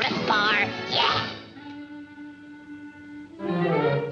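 Orchestral cartoon score under Daffy Duck's high, sped-up voice for about the first second. The music then drops to a quiet held chord and swells loudly again near the end.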